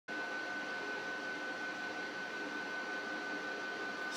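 Steady machine noise, like a fan or air conditioner running, with a thin steady high whine held through it.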